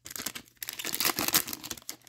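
Foil wrapper of an Upper Deck hockey card pack crinkling and tearing as it is opened, in two spells with a short break about half a second in.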